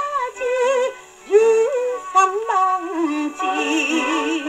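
A 78 rpm shellac record of a Japanese popular song playing on a US Army Special Services portable phonograph through its sound box, with a soft-tone steel needle: a woman sings with heavy vibrato over the orchestra. A steady surface hiss runs under it, and the singing breaks off briefly about a second in.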